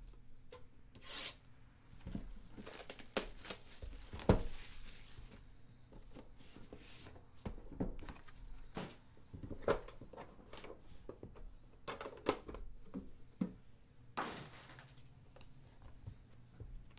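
Handling and opening a sealed trading-card box: irregular rustling, scraping and tearing of cardboard and wrapping, with knocks of the box and its tin against the table, the sharpest knock about four seconds in.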